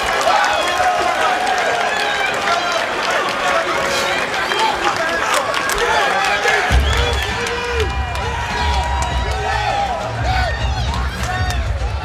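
Arena crowd cheering and shouting after the final bell of an MMA fight, with scattered claps and calls. A deep bass rumble comes in suddenly about seven seconds in and carries on under the crowd.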